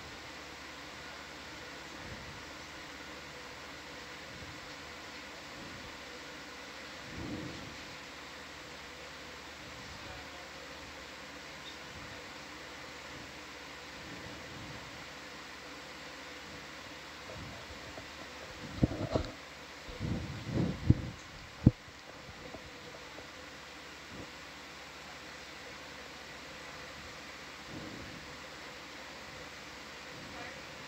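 Steady hiss and hum of the control-room audio feed, with two faint steady tones. A cluster of several loud knocks and thumps comes about two-thirds of the way through, with a softer bump earlier and another near the end.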